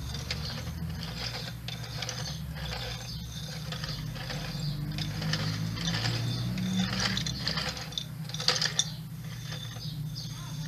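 Plastic wheeled toy clicking and rattling as a small child pushes and presses it along a hard floor, its wheels and mechanism giving a run of quick ratchet-like clicks, with a few louder clicks near the end.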